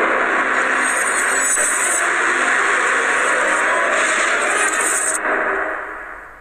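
A YouTube channel intro sting: a loud, dense, noisy sound effect with faint music under it, fading out near the end.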